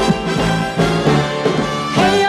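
Big band with a brass section and piano playing an upbeat instrumental introduction over a moving bass line.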